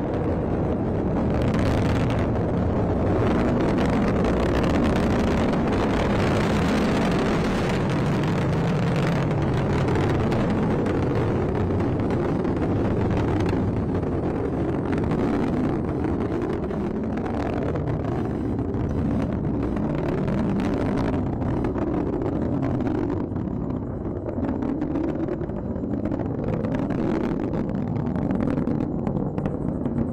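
Atlas V rocket's RD-180 main engine and solid rocket boosters during ascent, a continuous deep rumble with crackle, thinning slightly in the high end near the end.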